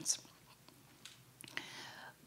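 A brief pause in a woman's speech into a handheld microphone: the hissing tail of a word right at the start, then near quiet, then a soft in-breath during the last half second.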